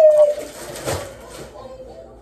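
A woman's voice holding one drawn-out, slightly falling note for about half a second, trailing off from her last words.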